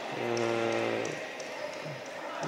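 A man's drawn-out hesitation sound, "aaa…", held on one flat pitch for about a second. After it comes the steady background noise of an indoor sports hall.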